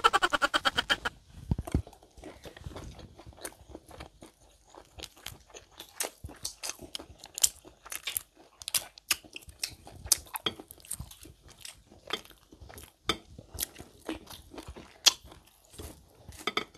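Close-miked eating sounds: irregular wet chewing, crunching and lip-smacking clicks of people eating shrimp and chicken wings.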